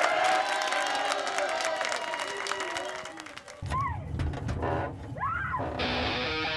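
Studio audience applauding and cheering. About three and a half seconds in, a song's intro begins under it, with a low drone and sliding pitched tones.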